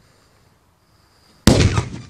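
A Cobra 6 flash-powder firecracker exploding about one and a half seconds in: a single sudden, very loud bang that dies away over about half a second.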